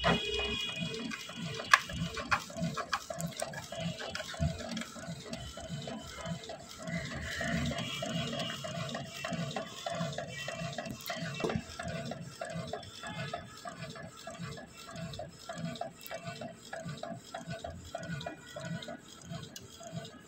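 Canon Pixma G3420 inkjet printer printing a 4×6 photo on glossy photo paper: the print head running back and forth with a steady hum and rhythmic ticking.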